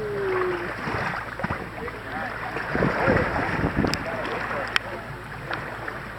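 Shallow seawater splashing around a shark held on a rope line, under steady wind on the microphone. Two sharp clicks come in the second half.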